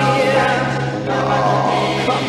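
A 1962 doo-wop vocal group singing close harmony with orchestral backing, over a held low note.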